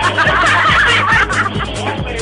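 Dance music with a steady beat, with a group of people laughing loudly over it for about the first second and a half.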